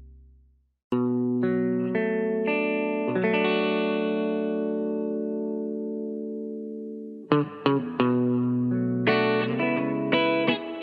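One song's last held note fades out to a moment of silence, and under a second in a new soul track starts on guitar: a few plucked notes ringing into a long held chord, then quicker picked notes from about seven seconds in.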